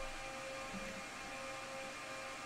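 Faint, steady background hum of room noise with a few thin constant tones and no separate events.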